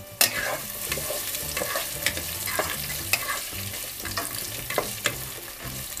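Diced onion sizzling in hot oil in a multicooker's non-stick bowl on its frying setting, with a spatula stirring and scraping against the bowl in repeated short knocks.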